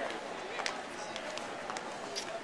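Indistinct background voices over a steady room or outdoor noise, with a few short, sharp clicks.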